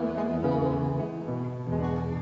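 Acoustic guitar playing an instrumental passage of a folk song, over long held low notes.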